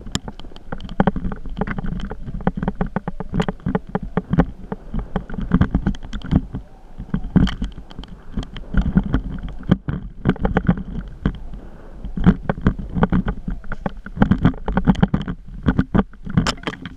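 Camera rattling and knocking as it moves over a rough dirt trail, with a constant low rumble on the microphone and a dense run of sharp knocks that thin out briefly around the middle.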